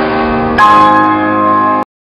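Piano playing held chords, with a new chord struck about half a second in and held until the sound cuts off suddenly near the end.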